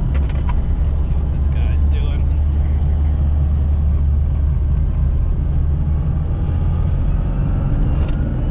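Classic Mini's small four-cylinder engine running steadily under way, a low drone with road and tyre noise, heard from inside the small cabin. The drone swells a little in the middle and eases toward the end.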